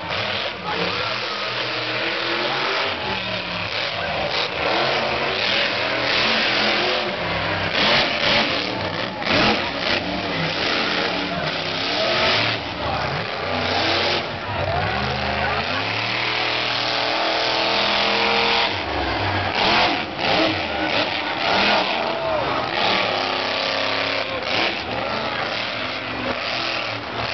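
Monster truck engine revving hard, its pitch rising and falling again and again, with one long climbing rev a little past the middle. Voices of the spectators are mixed in.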